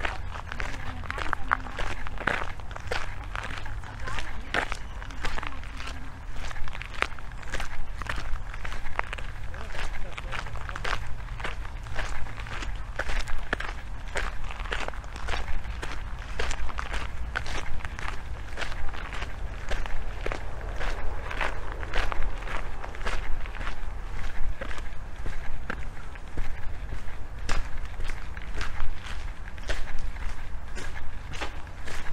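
Footsteps crunching on a fine gravel path at a steady walking pace, about two steps a second, over a steady low rumble.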